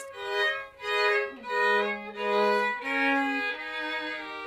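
String quartet playing classical music: slow bowed notes on violins swell and fade about once a second, with a lower string part joining after about a second.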